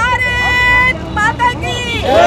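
Voices shouting the patriotic slogan "Bharat Mata ki Jai": one call held long and steady for about a second, then shorter shouts.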